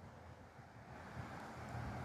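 Faint outdoor background noise: a steady low rumble and soft hiss that grow slightly louder toward the end, with no distinct event.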